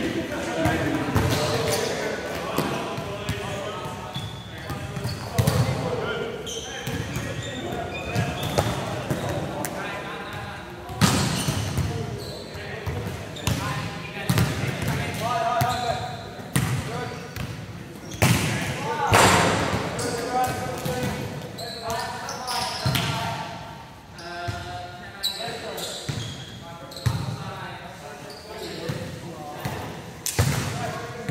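Volleyballs being hit and set, with sharp slaps and thuds from hands and the hall floor, echoing in a large gym. Players' voices call out between the hits.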